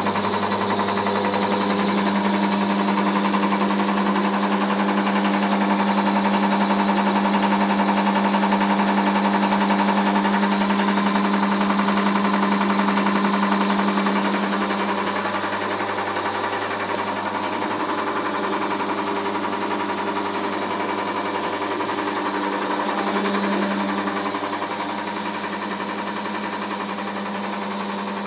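Electric motor of a rack-and-cloth fruit press running with a steady, loud hum. The hum drops a little in level about halfway through.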